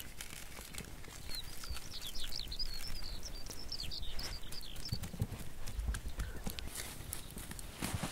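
A hand pepper grinder clicking in quick, irregular ticks as salt and pepper go onto raw lamb, with a run of high twittering chirps between about one and five seconds in.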